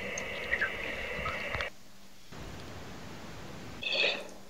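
Faint steady hiss with a thin high tone that cuts off suddenly about a second and a half in, leaving only fainter hiss; a brief short high chirp comes just before the end.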